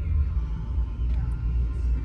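Steady low rumble inside the cabin of a 2013 Subaru Impreza under way: engine and road noise from its 2.0-litre boxer four-cylinder and tyres on a wet road.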